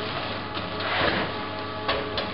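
Packing-line machinery and conveyor humming steadily, with a swell of cardboard-case handling noise about halfway through and a sharp click near the end.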